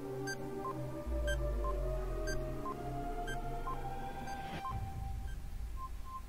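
Quiz countdown-timer music: a low drone and held tones under a tick-tock of short beeps, alternating high and low about twice a second, with a slightly longer beep near the end.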